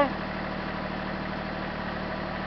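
Tractor engine idling steadily.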